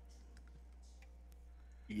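A few faint, scattered clicks over a steady low electrical hum, as from a computer mouse or keyboard. A voice starts at the very end.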